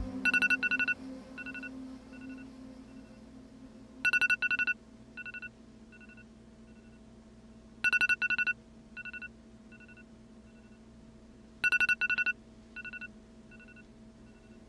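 Smartphone alarm tone: a quick group of high electronic beeps followed by fainter, fading echo-like repeats, recurring four times about every four seconds over a faint steady low hum.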